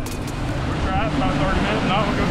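Bass boat running fast on the lake: a steady outboard motor drone under the rush of wind and water, with a man's voice talking over it from about a second in.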